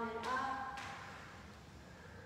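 Sung vocal music with a chant-like quality: a long held note ends with a short rising note about half a second in, then dies away.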